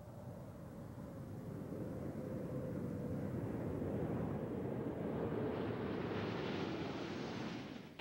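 Rushing air noise of the unpowered Space Shuttle orbiter Endeavour gliding low over the runway just before touchdown, growing steadily louder and brighter, with a faint steady tone underneath. It cuts off abruptly near the end.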